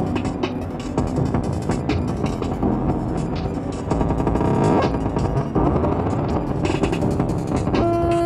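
Elektron Model:Samples groovebox playing a heavily distorted electronic drum pattern, its sound reshaped live by knob turns with distortion and a filter applied across all tracks. It gets louder about four seconds in.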